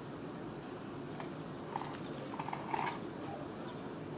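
Handling noise: a few light clicks and taps as a small plastic parts bag and a boxed power supply are handled, over a steady low hiss.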